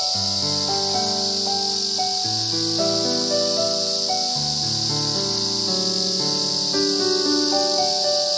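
Instrumental background music of sustained melodic notes, over a steady high-pitched insect drone.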